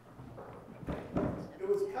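A man's voice speaking over a microphone in a large room, with a few short knocks about a second in.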